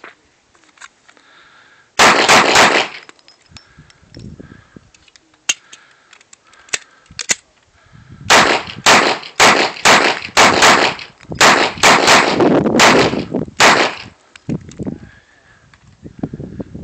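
Springfield Armory XD 9mm pistol firing: a quick burst of about four shots about two seconds in, a pause of several seconds with a few faint clicks, then a long rapid string of about a dozen shots that ends near the end.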